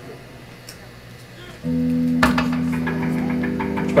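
Low room noise, then about one and a half seconds in an amplified note comes in and holds. A moment later an electric guitar chord is struck and rings on through the amp.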